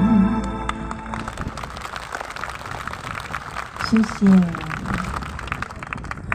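A live song's final held note, wavering slightly, stops about a second in, and a concert audience then applauds, with a short spoken phrase from the singer over the PA about four seconds in.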